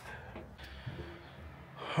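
A man breathing hard and quietly, catching his breath just after climbing a long, steep flight of stairs.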